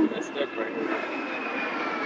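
A few soft knocks as a car's rear-seat centre armrest is folded down, over steady background noise with a faint whine that slowly falls in pitch.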